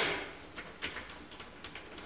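A single sharp clack from a manual transmission's shift lever, an NV3500 five-speed, as it is moved out of reverse. After it come a few faint light clicks and rustles of a gloved hand working the shifter.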